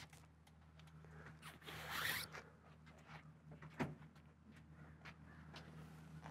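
Faint handling of a 1968 Mustang's vinyl convertible top as it is pulled down and latched to the windshield frame: a brief rustle and slide about two seconds in, then a single sharp click near four seconds. Quiet otherwise, with a faint low hum underneath.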